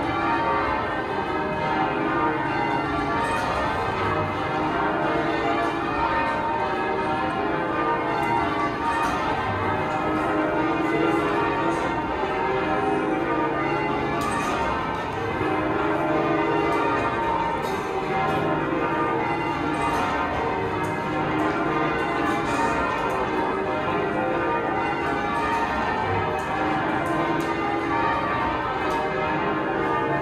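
Church bells being rung full-circle in change ringing: a continuous, steady stream of bell strikes sounding one after another in rounds-like rows.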